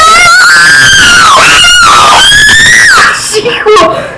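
A child screaming very loudly in two long, high-pitched wavering screams, the first breaking off about a second and a half in and the second rising and then falling away at about three seconds, with shorter voice sounds after.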